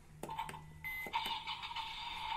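Battery-powered toy ambulance's electronic sound effect, set off by pressing the button on its roof: a few clicks, then a brief higher tone about a second in, then a steady electronic tone.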